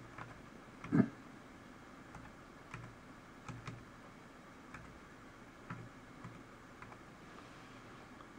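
Typing on a computer keyboard: a dozen or so separate keystrokes at an uneven, hunt-and-peck pace, with one louder knock about a second in.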